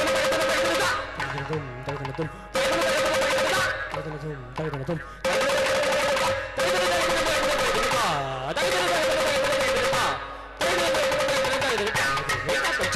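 Carnatic percussion ensemble of barrel drum, ghatam and morsing, the morsing twanging on one steady pitch under dense, rapid strokes. Short passages of vocal konnakol syllables come between the louder percussion phrases.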